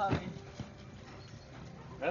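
Football being kicked between players in a passing drill: a couple of short knocks on the ball, with a brief shout at the start.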